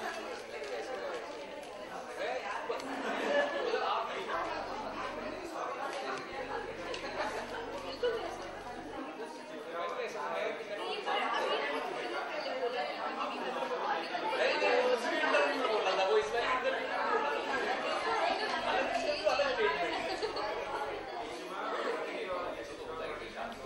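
Speech: several people talking over one another, a woman's voice among them.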